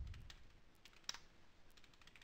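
Faint typing on a computer keyboard: a few scattered keystroke clicks, one louder about a second in.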